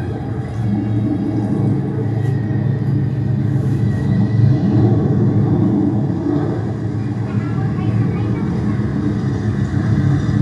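Loud, steady low rumble from an underwater film's soundtrack played over speakers, with indistinct voices mixed in.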